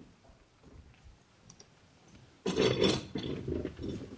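Courtroom room noise with faint shuffling as people move about, then a sudden louder clatter and scrape about two and a half seconds in, followed by irregular knocks and footsteps.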